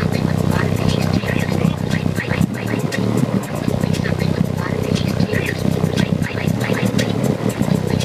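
Car audio subwoofers playing bass at extreme volume: a loud, steady, distorted low rumble that overloads the recording.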